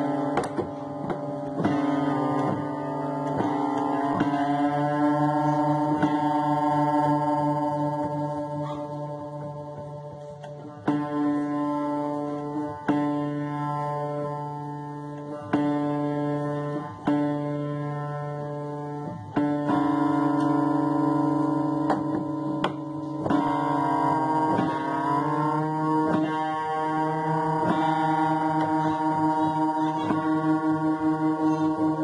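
Upright piano note struck again and again while its tuning pin is turned with a tuning lever. The sustained tone slides upward in pitch as the badly flat string is pulled up toward standard pitch, and it pulses with beats as it nears the right pitch near the end.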